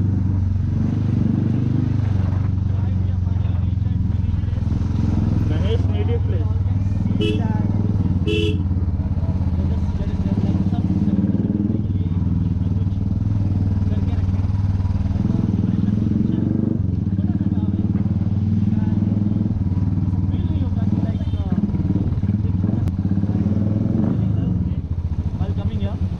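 Royal Enfield motorcycle engine running steadily at low road speed, a rhythmic exhaust note throughout.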